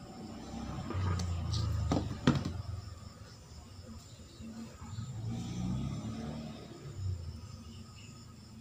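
Small clicks and handling noise as fingers work a desoldered electrolytic capacitor loose from a TV circuit board, with two sharp clicks about two seconds in, over a low background murmur.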